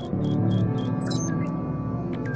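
Ambient background music with low sustained tones, overlaid with short electronic beeps and a few high sliding chirps about a second in.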